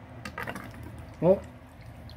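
Water spitting and sputtering from the end of a pinched plastic tube into a plastic catch basin, as air escapes with the flow. There is a short run of quick spits about half a second in.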